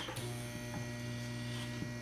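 Steady low electrical hum with a few even overtones, with a faint tick or two.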